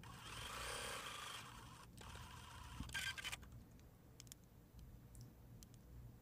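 Electric sewing machine stitching faintly for under two seconds, then a short mechanical whirr about three seconds in, followed by soft clicks and fabric rustle.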